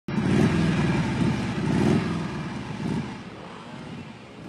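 Motorcycle engine running, loud at first and fading steadily over the last two seconds as it moves away.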